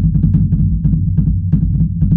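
Bass drum played fast on a double bass pedal: an even run of about eight strokes a second.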